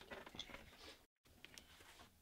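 Near silence: faint studio room tone with a few soft clicks, broken by a moment of complete silence about a second in.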